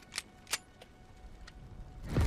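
A handgun being handled: two sharp, quiet clicks close together in the first half-second, then a couple of fainter clicks.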